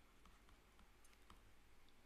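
Near silence with a few faint, scattered clicks of a stylus tapping on a pen tablet as a word is handwritten.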